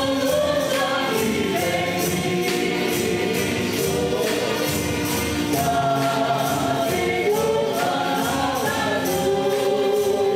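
Group singing a slow hymn with acoustic guitar, over a steady beat of shaken tambourines and a bass drum from a church percussion ensemble.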